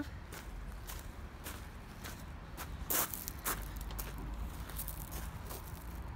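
Footsteps crunching on loose gravel at a walking pace, about one or two steps a second, with one louder step about three seconds in.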